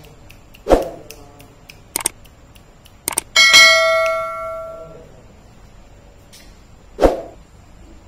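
Subscribe-button animation sound effect: a thump, then a few sharp mouse-click sounds, then a bright bell ding that rings out and fades over about a second and a half, and another thump near the end.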